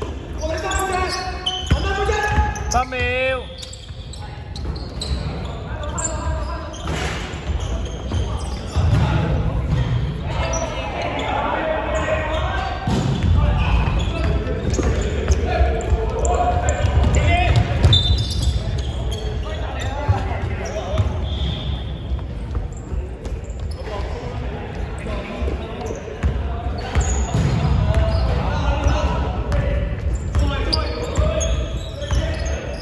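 Basketball game sounds in a large gym: the ball bouncing on the hardwood court as it is dribbled, and players' voices calling out, echoing in the hall.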